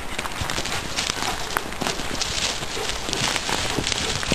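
Dogs running and scuffling through dry leaf litter and twigs on frozen ground: a dense, continuous rustle and crackle of paws with many small sharp snaps.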